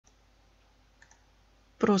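Low background hiss with a few faint small clicks, two of them close together about a second in; a voice starts reading aloud near the end.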